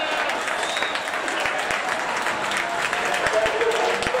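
Small crowd of football spectators applauding at full time, with voices calling out. A referee's whistle blast dies away about a second in.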